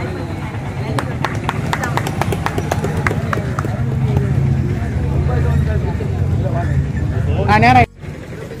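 A voice speaking over outdoor street noise: a steady low rumble, with a quick run of sharp clicks starting about a second in. The sound cuts off abruptly just before the end.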